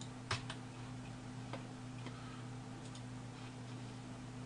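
A few faint computer mouse clicks, the loudest about a third of a second in, over a steady low hum.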